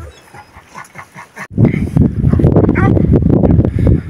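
A dog whimpering and yipping briefly, over loud low rumbling from wind on the microphone that starts suddenly about a second and a half in.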